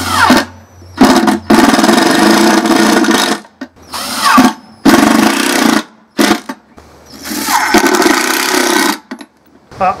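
Ryobi cordless drill driving screws into wood in about four runs, the longest about two seconds. The motor winds down in a falling whine after each run.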